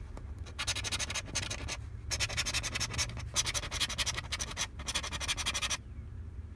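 Scratch-off lottery ticket being scraped with a small metal-tipped scraper: a rapid run of rasping strokes as the coating comes off the numbers, broken by a couple of short pauses.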